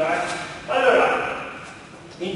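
A man speaking in short phrases, trailing off near the end.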